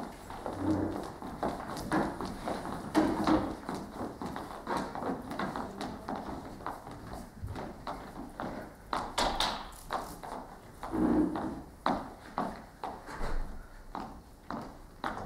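Footsteps on a wooden stage floor: irregular knocks of shoes, a few steps a second, from people walking about the stage.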